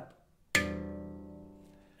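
A single slap on a steel handpan: one sharp hand strike about half a second in, then the pan's ring fading away.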